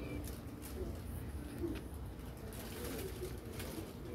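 Faint low cooing of a bird, a few short calls, over steady background noise.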